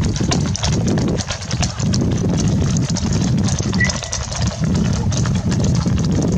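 Hooves of many horses clip-clopping in a quick, irregular clatter as a mounted field walks and trots over a paved road and grass verge, over a steady low rumble. A single short high chirp sounds just before four seconds in.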